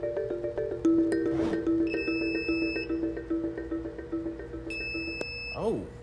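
Background music with mallet-like notes. About two seconds in, and again near the end, a power inverter gives a high-pitched alarm beep of under a second each time: its low-voltage warning that the battery has run down to about 21 volts at the end of a 100 A discharge.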